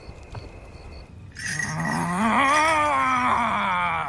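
A shaman's long wordless vocal cry in a ritual chant. It starts about a second and a half in, rises in pitch and then slowly falls, with a wavering vibrato.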